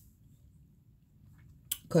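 Near silence: quiet room tone in a small room, with a woman starting to speak near the end.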